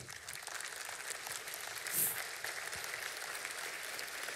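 Congregation applauding, a steady patter of many hands clapping.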